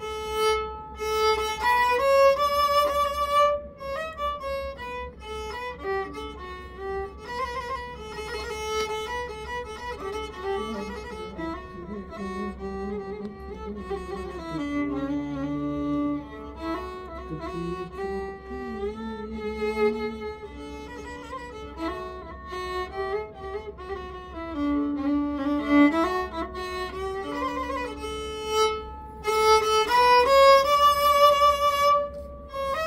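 Solo violin bowed in a Gujarati bhajan melody, a single line with wavering, sliding ornaments on the notes. The tune sinks to lower notes in the middle and climbs back higher near the end, over a faint low steady hum.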